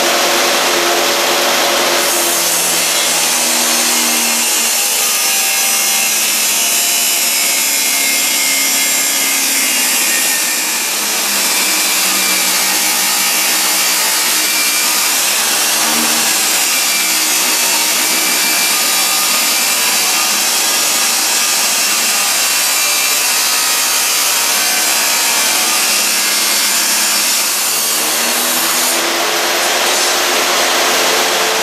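Table saw fitted with an abrasive metal-cutting disc, grinding steadily through metal stock. The motor hums freely for the first two seconds and near the end, while the cut itself runs loud and harsh in between.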